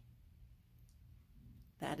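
Quiet room tone with a steady low hum and a couple of faint clicks, then a woman's voice begins near the end.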